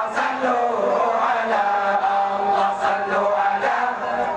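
A large group of men chanting Acehnese meulike zikir in unison, a steady melodic chant with long held notes.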